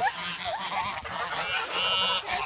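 A flock of white domestic geese crowding close and honking over one another, with one louder, clearer honk near the end.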